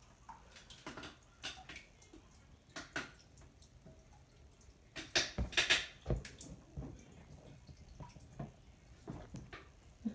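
Soft, scattered clicks and lip smacks as a child dabs lip color onto her lips with her fingertip, with a louder cluster of them about five seconds in.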